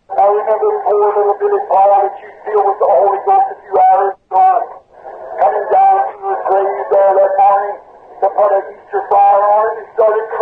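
A voice speaking continuously, thin and narrow in sound, with nothing below the low mids or in the highs, as from an old recording played back.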